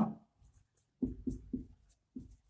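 Dry-erase marker writing on a whiteboard: a quick run of four or five short strokes starting about a second in.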